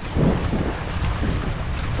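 Wind buffeting the microphone in a rough, uneven rumble, over small waves washing against the jetty's boulders.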